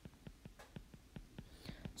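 Faint, quick ticks of a stylus on a tablet screen, several a second, as a short label is handwritten, with a soft breathy sound near the end.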